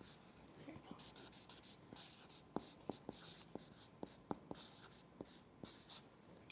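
Marker writing on a large paper pad: faint, short scratchy strokes, with light sharp ticks as the tip touches down and lifts off.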